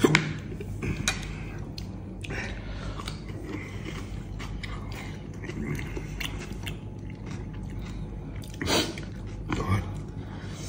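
A man chewing and biting food, with a fork clicking and scraping on a plate, over a steady low hum. A sharp knock comes right at the start and a short noisy burst near the end.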